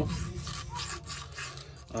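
Rubber-backed sandpaper rubbed by hand in short, quick side-to-side strokes inside a Homelite Super XL chainsaw cylinder, a dry scratchy rasping. It is cleaning deposits off the cylinder wall around the exhaust port rather than removing metal.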